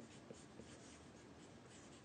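Faint scratching of a felt-tip marker writing stroke by stroke on a white surface, with a light tick as the pen touches down.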